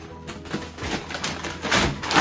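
Shiny metallic gift-wrapping paper crinkling and tearing as it is pulled off a large box, in several rustling bursts, the loudest near the end.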